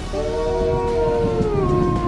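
Grey wolf howling: one long howl that begins just after the start, holds a steady pitch, then drops to a lower note about one and a half seconds in and carries on.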